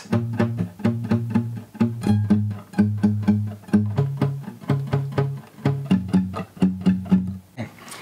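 Nylon-string classical guitar, capo on the first fret, playing single bass notes picked with a fingernail in steady down strokes, about four a second. The bass note changes roughly every two seconds, walking through the roots of A minor, G, C and F.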